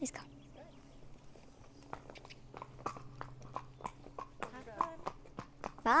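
A pony's hooves clopping on a concrete yard path as it walks off, about three or four hoofbeats a second from about two seconds in.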